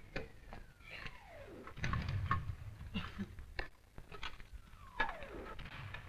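Incoming artillery shells whistling down, each a falling whistle: the first over the opening second and a half, ending in a dull low rumble of its burst, the second about five seconds in. Scattered knocks and clatter between them.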